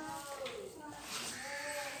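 Faint children's voices, drawn out and wavering in pitch.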